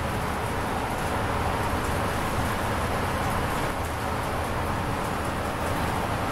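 Steady road and engine noise of a moving bus, heard from inside the passenger cabin.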